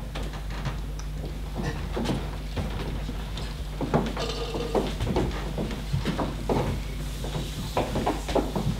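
Footsteps and shuffling of several people walking across a stage floor, in irregular knocks, over a steady low hum in the hall. A short pitched sound comes in about four seconds in.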